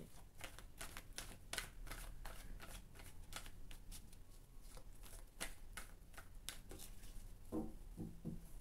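A deck of tarot cards shuffled by hand: a faint, irregular run of soft card clicks and slaps, several a second, as the cards slide against each other.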